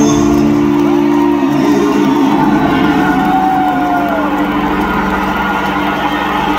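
Live rock band playing out the end of a song: a loud held chord from guitar and bass, with guitar notes sliding up and falling back over it, and a crowd cheering.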